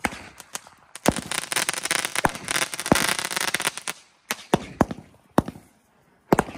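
Sky shot aerial fireworks firing from ground tubes. A dense run of bangs and crackle starts about a second in and lasts until about four seconds, followed by a few scattered single bangs.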